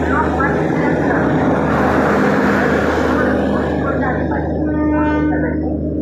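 Passenger train coaches rolling past along a station platform: a steady, loud rumble, with a brief high-pitched tone about five seconds in.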